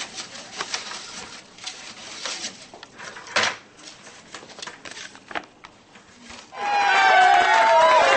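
Paper rustling and crinkling as a folded card is pulled from a plastic bucket and unfolded, with a sharp knock about halfway through. About six and a half seconds in, a loud, wavering pitched sound with gliding tones cuts in.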